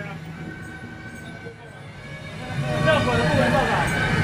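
People's voices over street traffic noise, with louder calling starting about two and a half seconds in.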